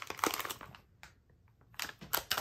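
Crinkly blind-bag wrapper crackling as it is torn open and the keychain figure is pulled out, then a short pause and a few more light crackles and clicks near the end.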